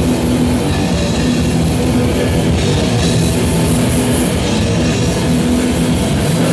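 Live metal band playing loud and without a break: electric guitar through Marshall amplifier stacks over a drum kit.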